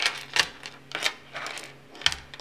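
Steel bolts and screws clicking as they are gathered off a wooden tabletop and snap onto a magnetic wristband: a few sharp metallic clicks, about one every half second.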